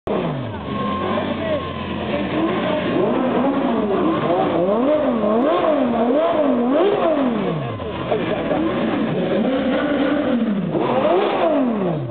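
Sports car engines being revved while parked, the pitch climbing and dropping again and again in quick throttle blips, with a run of several fast blips in the middle and slower rises and falls around them. Crowd voices underneath.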